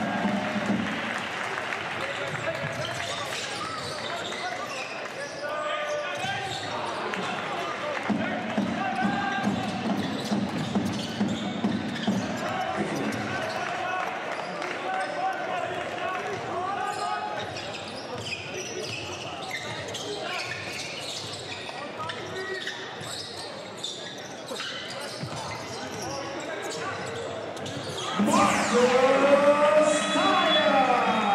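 Basketball game sound from a hardwood court in a hall: the ball bouncing, short sneaker squeaks and players' voices calling out over the arena background. It gets louder about two seconds before the end.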